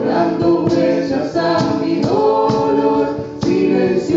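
A live acoustic band playing a song: several voices singing held notes together over a steadily strummed guitar.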